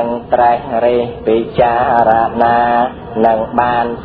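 A man chanting a Khmer Buddhist text in a sing-song recitation, holding each syllable on a steady pitch with short breaks between phrases.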